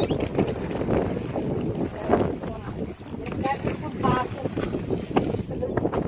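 Steady wind rumble on the microphone aboard a small wooden rowing boat at sea, with the wash of open water. Brief indistinct voices come in about halfway through.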